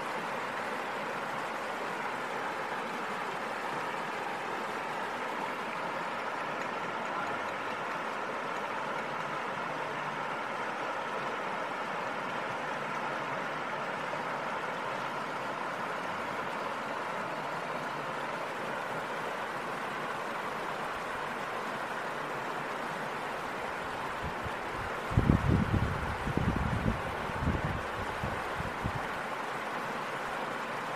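Steady rush of river water spilling over a low stone weir. Near the end, a few seconds of louder, irregular low rumbling bursts.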